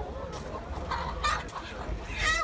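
Chickens crowded in a wire crate clucking, with a couple of short calls about a second in.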